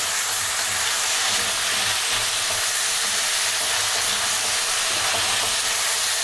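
Diced pork and chunky onion sizzling steadily in hot olive oil in a wok, a constant frying hiss.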